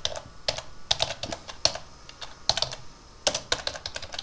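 Computer keyboard typing: a dozen or so keystrokes in short, uneven runs.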